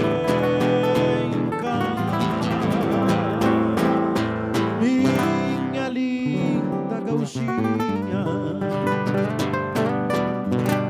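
A live gaúcho folk band playing a rancheira: strummed acoustic guitar under a violin melody with vibrato, steady throughout.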